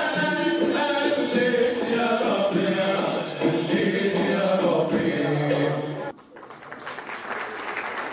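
Male vocal group with a lead singer performing a devotional song, several voices together. The singing cuts off abruptly about six seconds in and is followed by audience applause.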